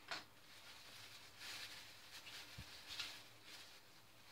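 Faint crinkling and rustling of a thin plastic bag being handled and unwrapped, in a few irregular bursts, with one soft knock past the middle.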